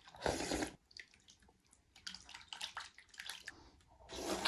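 A man slurping hand-rolled noodles in tomato-and-egg soup from a bowl: one loud wet slurp near the start, then softer, scattered slurps and mouth sounds.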